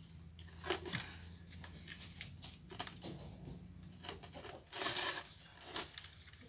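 Paint bucket being wrenched and torn away from a freshly cast concrete stove, with irregular scrapes, cracks and crinkles and a longer scraping burst about five seconds in. The bucket is stuck fast because it was not oiled before the concrete was poured.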